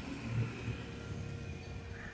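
A motor scooter's engine as it rides past on the street, a low rumble that swells briefly in the first second and then fades.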